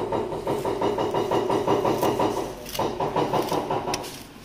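A motor or engine running with a fast pulsing beat, breaking off for a moment about two and a half seconds in, then running again briefly before stopping near the end.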